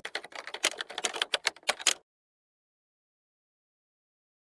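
A typing sound effect, a quick run of key clicks at about eight to ten a second, that stops abruptly about halfway through.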